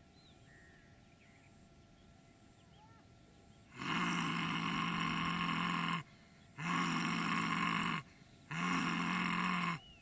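A man roaring three times in the yoga lion pose (Simhasana), mouth wide open and tongue stretched out. The roars begin about four seconds in, each a loud, steady-pitched, drawn-out 'haaa' lasting one to two seconds, with short gaps between them.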